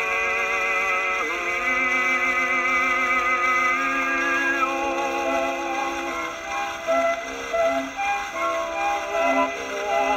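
A 1906 Victor 78 rpm record of an opera duet playing on a Columbia Grafonola 50 acoustic phonograph. Long held notes come first, then a run of shorter notes, over faint surface hiss.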